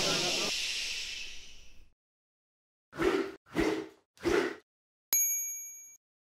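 Title-card sound effects: a hiss fading out, then three short swooshes about two-thirds of a second apart, and a bright chime-like ding about five seconds in that rings on as it fades.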